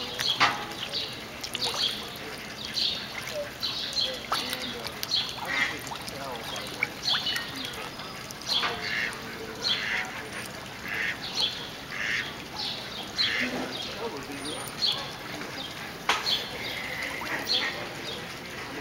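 Ducks quacking repeatedly, short calls coming every second or so.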